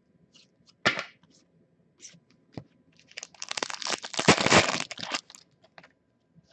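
Trading cards being handled and shuffled in the hands: a sharp snap about a second in, a few light ticks, then about two seconds of loud crackling, rustling and sliding as the cards are worked through.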